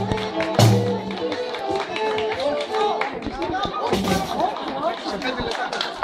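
Live Greek folk dance music: a lute played with a large drum beating time, with voices over it. A low held note drops out about a second in and the higher melody carries on.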